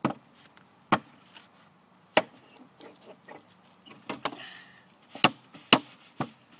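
A small hammer striking a nail into a weathered wooden board in a child's uneven, irregular blows: about five loud sharp strikes with a few softer taps between, two of them close together near the end.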